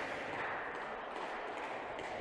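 Steady, low background noise of an indoor sports hall: an even murmur and hiss with no distinct events.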